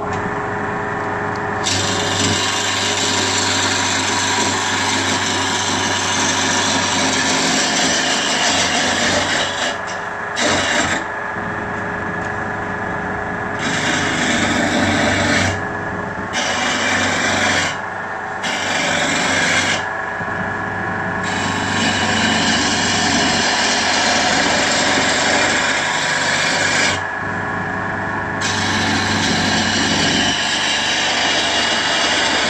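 Wood lathe turning a mallet blank while a hand-held gouge cuts the spinning wood: a rough, continuous scraping hiss of the cut over a steady machine hum. The cutting breaks off for a second or two about six times as the tool comes off the wood, then bites again.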